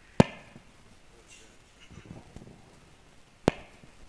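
Two sharp cracks, about three seconds apart, each very loud and sudden, with faint talk between them.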